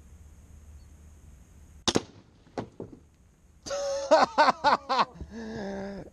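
A crossbow fires with a single sharp snap about two seconds in, followed within a second by two fainter knocks. Then voices break into short excited exclamations.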